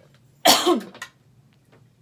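A woman coughs once, loudly, about half a second in.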